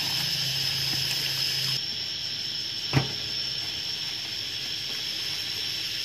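Tap water running onto mulberry leaves in a bamboo basket as they are rinsed by hand. The water sound drops off a little under two seconds in, and a single short knock follows about three seconds in.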